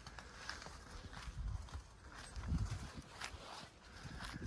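Faint footsteps and rustling through a patch of large-leaved zucchini plants, with scattered light clicks and a few soft low thuds.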